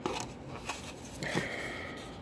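Soft rustling and faint crackling of hands handling a burger made with sliced bread, picking it up off a plate.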